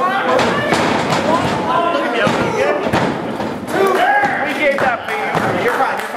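Spectators' voices shouting and talking over one another, broken by several thuds of wrestlers' bodies hitting the ring mat.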